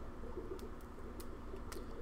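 A few faint, scattered clicks and light handling noise as hands pull older leaves off a potted sword plant, over a low room hum.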